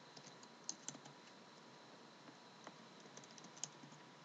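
Computer keyboard keystrokes: a handful of faint, scattered key clicks over a low steady hiss as values are typed into boxes.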